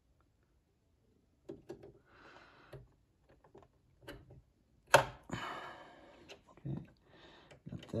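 Small clicks and ticks from working the automatic needle threader of a Singer sewing machine by hand while threading the needle, with a sharper click about five seconds in. The machine is not running.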